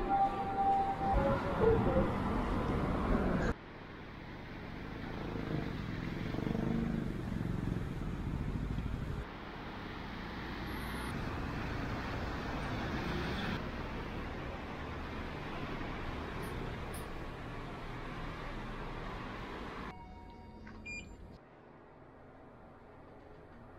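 City street ambience with steady road traffic noise, heard in several short walking clips joined by abrupt cuts. Near the end it drops to a quieter hum inside a lift, with a few faint high tones.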